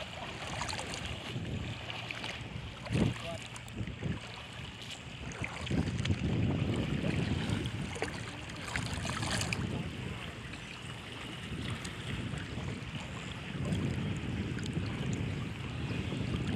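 Muddy floodwater sloshing and swishing around legs as people wade through it, with wind buffeting the microphone. The sloshing swells louder in stretches, with a few light knocks.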